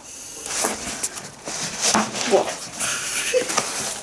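A pair of snow boots with quilted polyester uppers being handled close to the microphone: fabric rustling and rubbing in short, irregular swishes.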